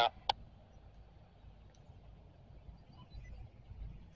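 Quiet outdoor background: a faint low rumble that grows slightly near the end, a few faint bird chirps about three seconds in, and one short click just after the start.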